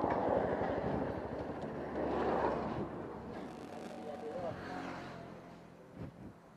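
Mojo 200 motorcycle's engine idling with an even low pulse that fades out about three seconds in, with faint voices in the background.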